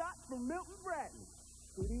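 Steady high-pitched squeal and low mains hum from an old VHS tape recording, under a brief voice in the first second; speech starts again just before the end.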